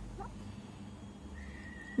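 Low, steady background hum, with a faint steady high-pitched tone coming in about halfway through.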